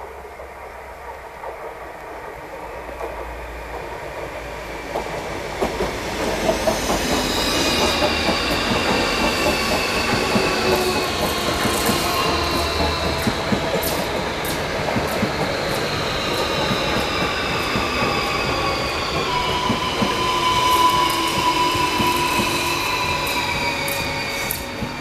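Renfe Cercanías electric commuter train approaching and passing close by, growing louder over the first six seconds. Then a steady rumble of wheels on rail with high whining tones that slowly fall in pitch, and scattered sharp clicks as the carriages go by.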